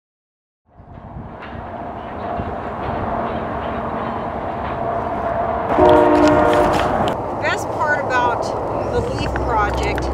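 Outdoor ambience fading in as a steady rumble, with a distant train horn sounding once, a chord of several steady tones lasting about a second, some six seconds in.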